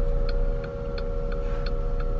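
A car's turn-signal indicator ticking evenly, about three clicks a second, inside the cabin over a low steady engine and road hum.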